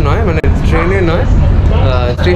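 A man talking to the camera in a non-English language, over the steady low rumble of a metro train carriage.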